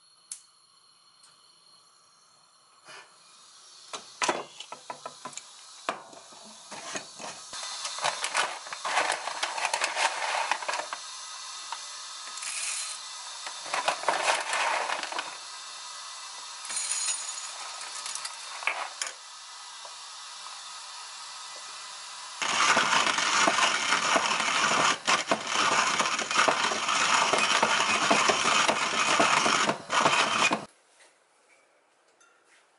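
A gas stove burner clicks alight near the start. Next comes a stretch of clicks, rattles and rustling as coffee beans and their paper bag are handled and the beans go into the hopper of a wooden hand-crank coffee grinder. About two-thirds of the way in, the grinder is cranked, and its burrs crushing the beans make a steady, gritty grinding that is the loudest sound here.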